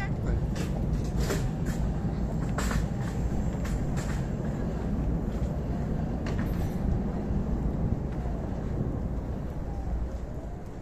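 Outdoor street ambience: a steady low rumble like traffic, with a scatter of sharp clicks and knocks in the first half.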